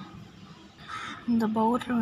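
A woman's voice speaking in long, drawn-out vowels from about two-thirds of the way in, after a quieter start with a brief faint rasp about a second in.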